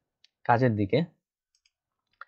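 A computer mouse click, then a short spoken word, then a few faint clicks.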